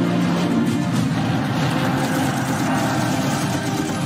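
Soundtrack music with jet aircraft engine noise that thickens about a second in and stays dense until a cut at the end.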